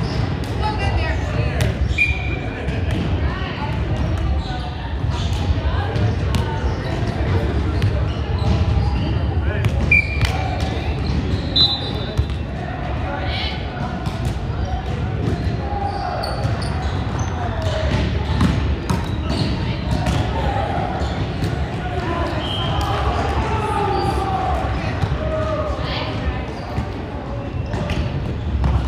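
Volleyball game sounds in a large echoing gym: repeated sharp ball hits and bounces on the hardwood court, with players' voices calling out during play.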